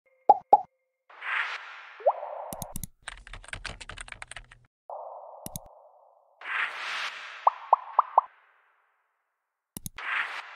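Animated-intro interface sound effects: two quick pops, then several swooshes, a rapid run of keyboard-typing clicks lasting about a second and a half as a search query is typed, a single mouse click, a whoosh carrying four short pitched bloops, and a double click near the end.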